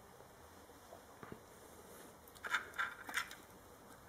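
Faint room tone, then a handful of short clicks and scrapes from about two and a half seconds in: handling noise as a hand reaches for and grips a plastic controller module.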